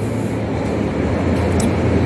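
Steady background noise: a low hum under an even hiss, with no distinct event.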